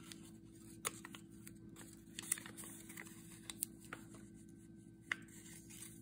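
Faint, scattered ticks and crackles of fingers handling a torn piece of washi tape and pressing it onto card stock, over a low steady hum.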